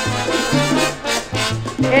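Salsa band playing an instrumental fill between sung lines: a bass line stepping from note to note under percussion and the band's other instruments. The lead singer comes back in at the very end.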